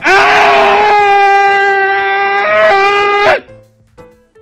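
One long, loud scream held at a single pitch for about three seconds, rough at the start, with a brief lift in pitch near the end before it cuts off suddenly.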